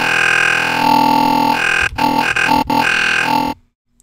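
Serum software synth holding a single sustained bass note on the Creeper wavetable while its wavetable position is swept, so the tone shifts through very vowely, vocal timbres. It breaks off briefly twice near the middle and cuts off suddenly about half a second before the end.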